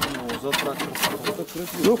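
Men's voices talking under their breath while hands work at the weed-grown metal tractor cab, making several short rustles and clicks. A man says "Ну-ка" at the very end.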